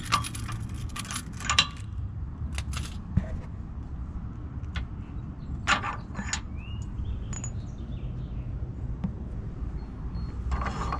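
Keys jangling and scattered sharp metallic clicks and clinks as a locking hitch pin is unlocked and drawn out of a trailer-hitch receiver and the hitch is handled, over a low steady rumble.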